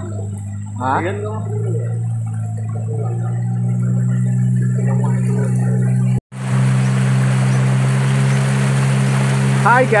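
Longboat's outboard motor running steadily under way, a low even hum. After a brief cut about six seconds in, a loud hiss of water and wind joins the motor.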